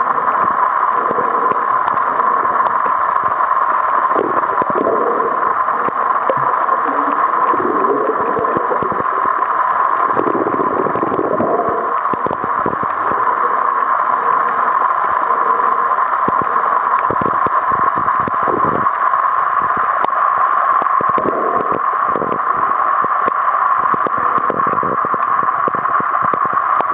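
Steady gurgling, rushing water noise with many small scattered clicks throughout.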